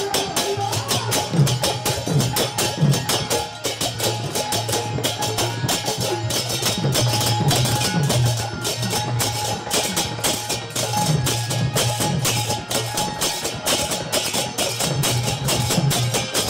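Live folk percussion: a painted barrel drum beaten in a steady dance rhythm, its low strokes bending in pitch, under a fast, even clashing of small brass hand cymbals.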